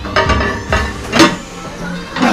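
Plate-loaded barbell rows at a fast pace: the metal bar and plate clink sharply with each rep, three times about half a second apart, over background music.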